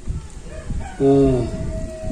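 A rooster crowing: one call that rises, then ends in a long held note that falls slightly.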